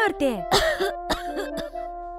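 An elderly woman coughing and clearing her throat, two short coughs about half a second apart, over gentle background music with held tones.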